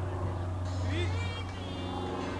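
Outdoor ambience: a steady low hum runs under faint distant voices, with a brief high chirp about halfway through.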